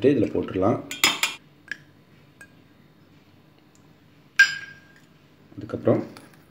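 Split lentils poured from a small steel bowl clatter briefly into a steel bowl of grated coconut about a second in. A few seconds later a single sharp clink of steel rings out with a short ringing tone.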